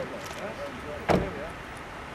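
A car door shutting with one thump about a second in, over faint background voices.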